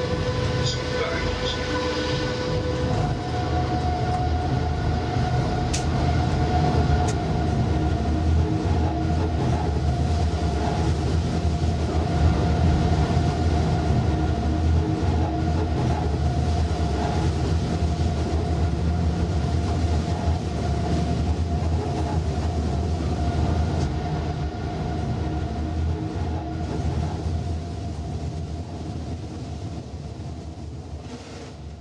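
Electric train running, heard from the driver's cab: a steady low rumble with a droning tone that steps up in pitch a few seconds in. The sound fades down near the end.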